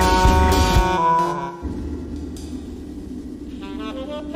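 A live jazz improvising band of saxophones, electric bass, guitars and drums plays loudly, then mostly drops out about a second and a half in, leaving a low steady drone. Near the end a saxophone starts a phrase of short separate notes.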